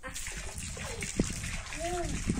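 Water spraying from a garden hose and splattering, a steady hiss, with a single sharp click a little past one second in.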